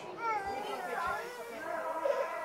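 Children's voices chattering, high-pitched and overlapping, with no clear words.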